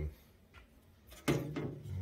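A single short metal click as a bolt is pushed against the steel bulkhead and pedal box plate, followed by a man's drawn-out, steady-pitched 'hmm'.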